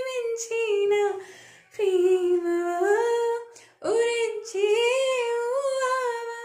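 A woman singing a Telugu song unaccompanied, in three phrases of long held notes with short breaks for breath between them.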